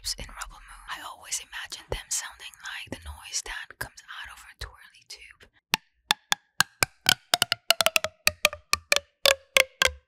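Purple corrugated plastic pop tube (twirly tube) worked close to the microphone. A soft breathy hiss runs for about five seconds, then comes a quick run of sharp ridge clicks, several a second, each with a faint ringing tone that steps lower in pitch as the tube is drawn out.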